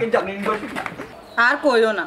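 A person's voice in two short vocal sounds without clear words, one at the start and a louder one near the end, with a quieter gap between.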